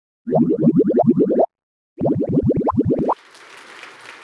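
Sound effect for an intro logo: two runs of quick, bouncy rising blips, about nine a second, each run a little over a second long with a short gap between them. A faint room hiss follows.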